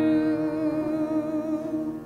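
A congregation singing a hymn holds a long final chord, the voices wavering slightly. The chord is released right at the end.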